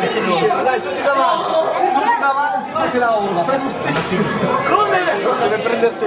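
Several voices talking over one another at once: lively chatter from a group of people.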